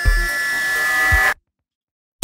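Electronic background music building with a held high note over a swelling hiss, then cutting off suddenly to dead silence about a second and a half in.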